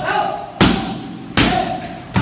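Muay Thai strikes landing on a pair of Thai pads: two sharp smacks about a second apart, part of a steady rhythm of pad strikes, each followed by a short voiced call.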